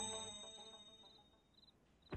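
The tail of a bell-like musical sting, several pitched tones ringing out together and fading away to silence about a second in.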